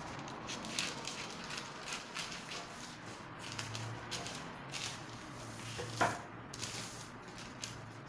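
Scissors cutting through brown pattern paper: a run of uneven snips and paper crackle, with one sharper click about six seconds in.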